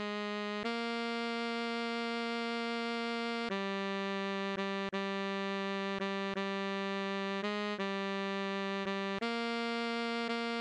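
Solo alto saxophone melody with dead-steady pitch and no vibrato. It holds one long note for about three seconds, then plays a run of short repeated notes in a lilting long-short rhythm.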